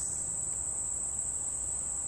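Insects trilling in the woods, one steady high-pitched tone without a break.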